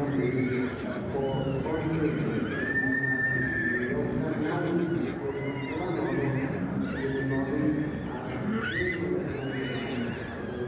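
Horses neighing repeatedly, several high calls that bend in pitch, one of them held long, over a steady background of voices.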